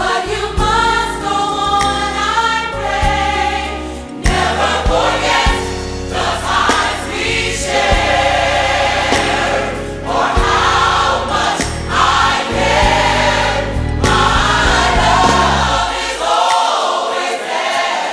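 Gospel song with a choir singing over a musical accompaniment. The low accompaniment drops away about two seconds before the end, leaving the voices.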